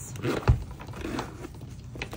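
The zipper of a packed-full Coach Swing Zip handbag being pulled closed, with scratchy rustling as the bag is handled and a dull thump about a quarter of the way in.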